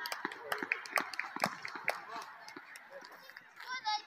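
Children shouting and calling in high, shrill voices, with several sharp knocks in the first two seconds and one loud, high-pitched yell near the end.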